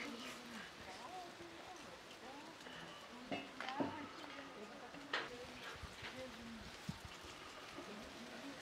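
Free-range hens clucking faintly and intermittently while they forage, with a few sharp clicks near the middle.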